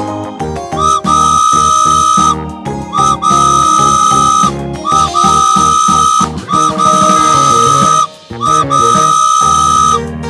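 Cartoon steam-train whistle sound effect: a series of about five long, steady, high whistle blasts, each starting with a short upward slide, over background children's music.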